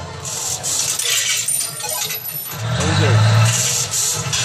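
Show sound effects over loudspeakers during a scene change in a castle projection show: short bright bursts of noise, then a low sustained tone with a brief sweep about two and a half seconds in, over crowd voices.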